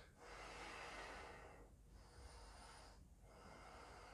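Near silence, with faint breathing in slow breaths.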